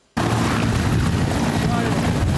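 Mi-8 helicopter's turbine engines and rotor running steadily, cutting in suddenly just after the start, with men's voices faintly underneath.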